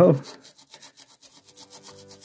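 Worn synthetic paintbrush scrubbing a miniature in quick, repeated strokes to clear paint softened by paint remover.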